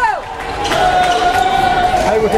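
An amplified announcer's voice echoing around a gymnasium, ending a falling phrase and then stretching one word into a long, steady held note.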